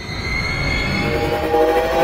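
Logo-intro sound effect: a swelling rush of noise with held tones. A high tone fades out about a second in, as a cluster of lower tones comes in and climbs slightly in pitch.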